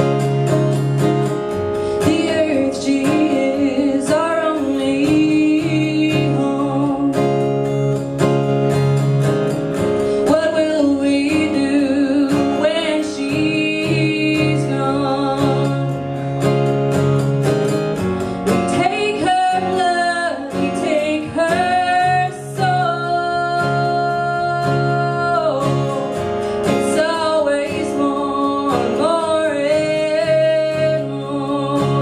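A woman singing while strumming her own acoustic guitar, with one long held note a little past the middle.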